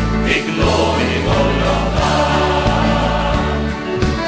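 Gospel band playing an instrumental break between verses, a piano accordion carrying the tune over a bass line that steps from note to note and strummed acoustic guitar.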